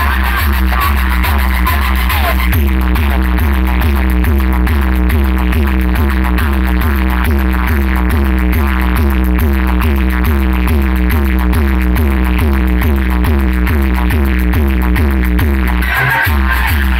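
EDM track played loud on a DJ road-show sound system, dominated by a heavy, continuous bass. The bass comes in at the very start, under a fast, evenly repeating beat.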